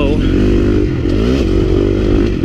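KTM 350 XC-F's single-cylinder four-stroke engine running under load on the trail, its pitch rising and falling with the throttle.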